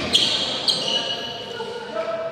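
Badminton rally on an indoor court: two sharp racket hits on the shuttlecock about half a second apart near the start, with high-pitched squeaks of shoes on the court floor, and voices in the background.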